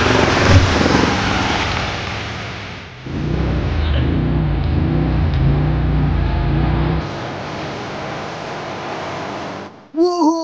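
Can-Am ATV engine running under throttle as the quad ploughs through mud and water, with a dense rushing spray at first. In the middle its engine note rises and falls as the throttle is worked, and near the end a quieter rushing noise follows.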